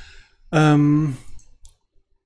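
A man's drawn-out hesitation sound, like a held 'ähm', then a couple of faint computer mouse clicks near the end as a right-click opens a menu.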